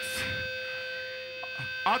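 Steady electrical hum and buzz from the band's stage amplification, several held tones with no playing, filling a pause in the vocalist's talk over the PA; his voice comes back briefly at the very end.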